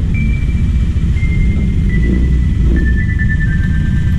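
Steady low rumble of a motor scooter being ridden in slow traffic, with background music over it: a slow melody of single held high notes that steps downward towards the end.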